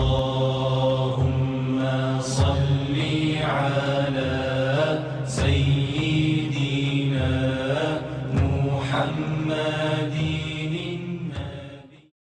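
A voice chanting in long, bending melodic phrases over a steady low drone, fading out near the end.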